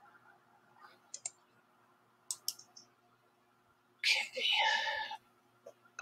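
A quiet room with a few faint, sharp clicks, a pair about a second in and a few more about two and a half seconds in, then a brief faint voice about four seconds in.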